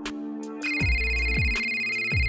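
An electronic phone ringtone, a steady high ring that starts under a second in, over background music with a deep bass-drum beat about twice a second.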